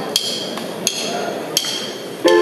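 Drumsticks clicked together to count in a song: three sharp, ringing clicks evenly spaced about 0.7 s apart.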